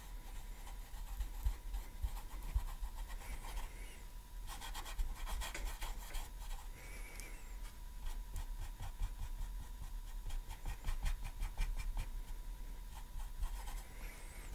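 Paintbrush scrubbing acrylic paint onto a stretched canvas, in quick runs of short scratchy strokes that are busiest about five seconds in.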